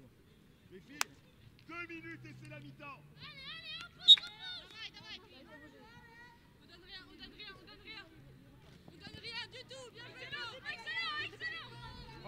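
Players and touchline coaches shouting to one another on a small-sided football pitch. Two sharp ball kicks cut through, a light one about a second in and a louder one about four seconds in.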